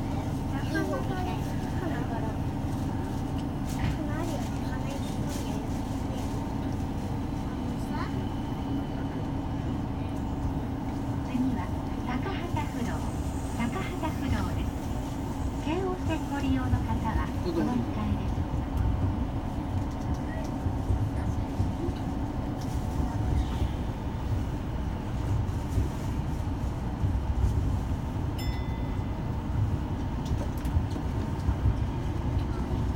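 Tama Monorail straddle-beam train heard from inside the car as it pulls away from a station and runs on: a steady low rumble and hum that grows somewhat louder as it gathers speed.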